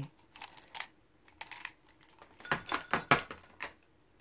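Makeup brushes and small cosmetic tools clicking and clattering against each other as they are rummaged through, in scattered clusters of clicks that are busiest from about two and a half seconds in.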